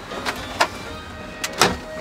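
Glove box of a 2008 Chevrolet Suburban being opened, its latch and lid making several sharp clicks, the loudest about a second and a half in.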